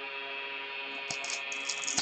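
Quiet background music, with a single click and a brief crinkle of a foil trading-card pack being handled a little over a second in.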